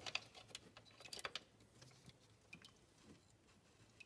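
Faint light clicks of a metal wrench being fitted onto the accessory-belt tensioner, mostly in the first second and a half, otherwise near silence.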